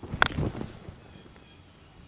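A putter strikes a golf ball out of a sand bunker: one sharp click about a quarter second in, followed by a brief hiss of sand spraying.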